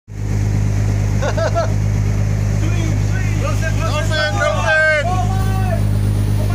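Boat engine running with a steady low drone, the loudest sound throughout. Over it, people's voices call out in drawn-out cries that rise and fall in pitch, about a second in and again through the second half.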